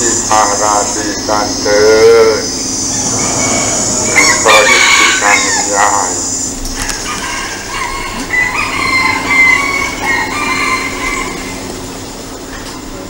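A rooster crowing: a long call in the first two seconds and a shorter one about four and a half seconds in, over a steady high-pitched drone that fades out about six and a half seconds in.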